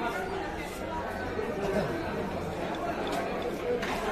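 Background chatter of several people talking at once, with one or two sharp knocks near the end.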